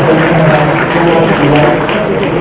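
An audience applauding in a large hall, mixed with music and a voice.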